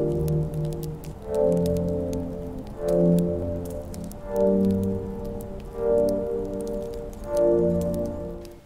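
Intro music of sustained chords that swell and change about every one and a half seconds, with a faint crackle of fine clicks over it.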